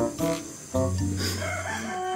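A rooster crowing, starting about halfway through, over background music of short, evenly spaced keyboard notes.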